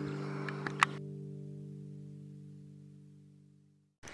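A strummed acoustic guitar chord ringing out and slowly fading away to silence, with one sharp click just under a second in.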